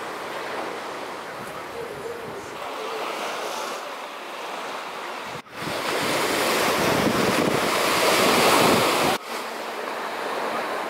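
Small sea waves breaking and washing up a sandy beach, a steady rush of surf. About halfway through, the surf suddenly becomes much louder and closer, then drops back abruptly near the end.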